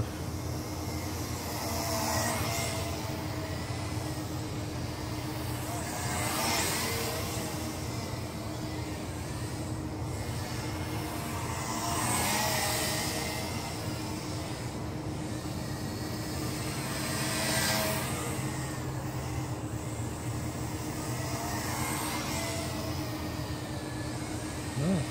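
UTO U921 camera quadcopter's motors and propellers buzzing in flight, a steady hum that swells and bends in pitch four times as it throttles up and turns.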